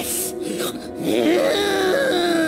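A strained, wordless wailing voice from a snarling creature character in a film, its pitch sliding up and down and then held in one long note near the end, over orchestral film score.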